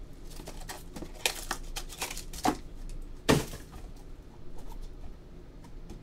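Light handling noises at a table: scattered soft clicks and rustles, with a sharper knock a little over three seconds in.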